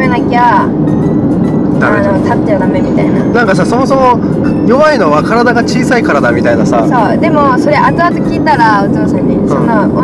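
Conversation with background music running underneath.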